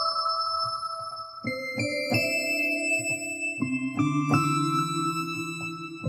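Software synthesizer played from a Roland A-49 MIDI keyboard controller: a series of keyboard notes and chords, each ringing on, with lower notes added in the second half as the octave setting is demonstrated.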